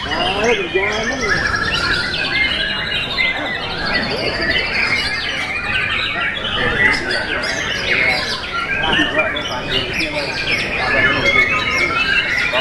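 White-rumped shamas (murai batu) in full contest song, several birds singing at once in a dense, unbroken mix of loud whistles and trills.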